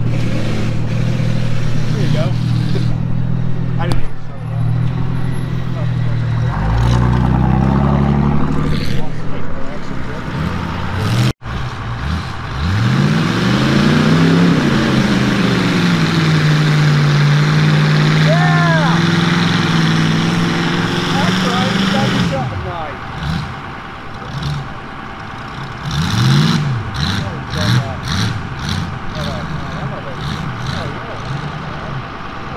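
A vehicle engine idling, then revving up. After a cut, a large four-wheel-drive farm tractor's engine revs up, holds a steady note, drops back, and revs again near the end.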